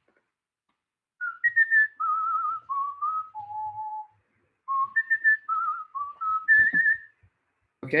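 A man whistling a short tune in two phrases, the pitch stepping up and down with a slight waver.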